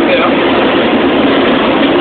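Heavy truck's engine running steadily at low speed, heard inside the cab as a constant hum and rumble.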